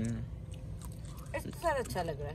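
A person chewing a mouthful of food close to the microphone, with small crunching clicks.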